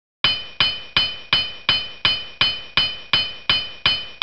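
Intro sound effect: a bright ringing clink struck evenly about three times a second, each strike dying away before the next, starting just after the opening.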